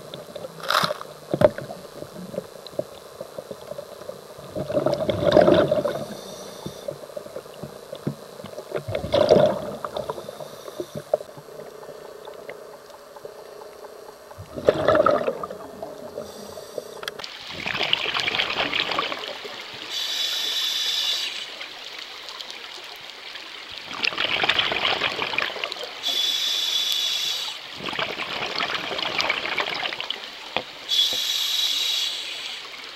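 Scuba diver breathing through a regulator underwater: rushes of exhaled bubbles every few seconds, and in the second half these alternate with a higher hiss.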